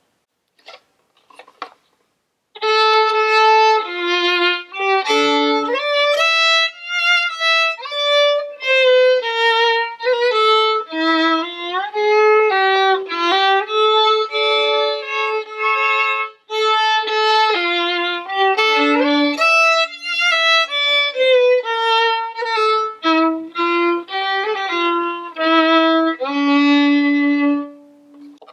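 Solo fiddle playing a slow melody with rubato, starting about two and a half seconds in: some notes are stretched and the next ones hurried to make the time back up, so the tune keeps its overall pulse. Some notes slide into pitch, and it ends on a long held low note.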